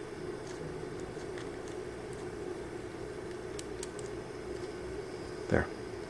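Steady low background hum of room noise, with a few faint clicks a little past the middle.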